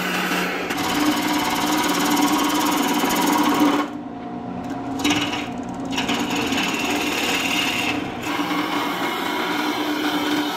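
Wood lathe spinning a dried red cedar blank while a gouge cuts it: a steady shearing hiss of the tool on the wood over the lathe's hum. The cutting breaks off for a moment a few times, leaving the hum.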